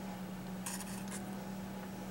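A few light clicks and scrapes about a second in, from fingers handling a small plastic cup of seed-starting mix. A steady low hum lies underneath.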